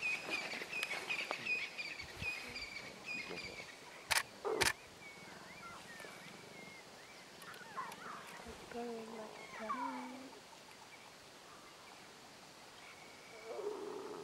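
Lion cubs squabbling as they suckle from a lioness, with scattered short low growls and squeals. Small birds chirp in the first few seconds, and two sharp clicks come about four seconds in.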